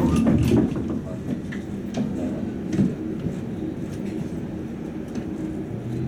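Interior of a Tatra T3 tram standing still: a steady low rumble with scattered light clicks, and a steady low hum that sets in near the end.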